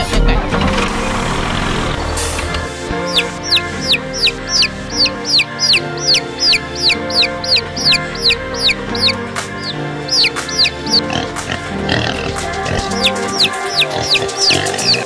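Background music with baby chicks peeping over it: short, high, falling cheeps about two a second, starting about three seconds in, pausing briefly and returning near the end.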